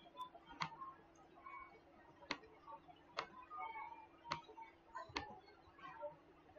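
Faint, irregularly spaced clicks of a computer mouse, about five of them, over a low steady hum.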